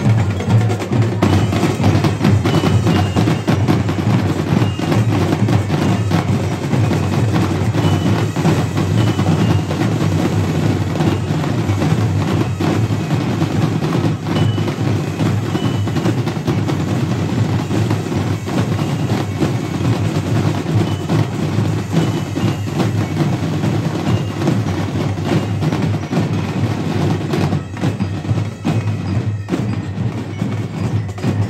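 Drum and bugle corps drumline playing continuously: rapid snare and tenor drum strokes over deep bass drum hits, with a few short, high bell-like notes ringing above.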